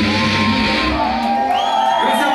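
Live heavy metal band with distorted electric guitars playing at the close of a song; the bass and drums drop out about a second and a half in, leaving held guitar tones and a rising shout.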